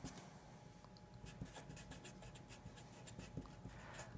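Black felt-tip permanent marker writing words on paper: faint, quick, irregular scratchy strokes.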